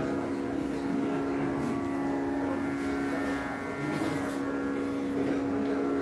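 A sustained instrumental drone: one low note held steadily with many overtones and no break or change in pitch.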